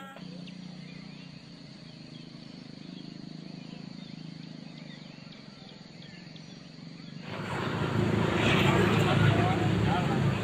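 Quiet outdoor background: a steady low hum with faint high chirps. About seven seconds in, a louder outdoor hubbub of people's voices chatting takes over.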